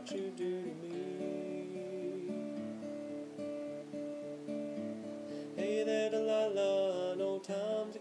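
Steel-string acoustic guitar playing a passage of held, ringing chords. A man's singing voice comes in over the guitar about five and a half seconds in.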